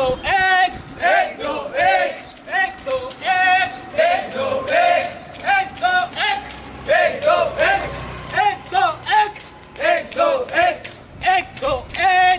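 A group of men chanting together in a steady, rhythmic cadence while running, short shouted syllables repeating about twice a second.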